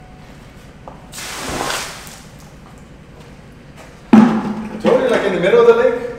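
A bucket of water tipped out onto the ground, a splashing rush that swells and fades over about a second, about a second in. From about four seconds in, loud men's voices follow.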